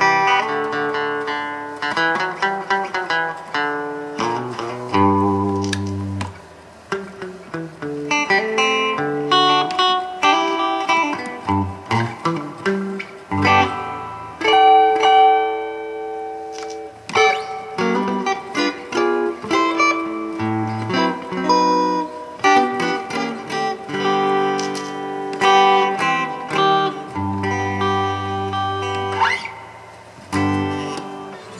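1967 Gretsch Double Anniversary hollow-body electric guitar played through a Fender Princeton Reverb reissue amp: a run of picked single-note licks and chords, with one chord left ringing for a couple of seconds about halfway through.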